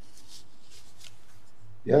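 A pause in video-call audio: steady background noise with a few faint, brief rustles. A man's voice starts to answer "yes" at the very end.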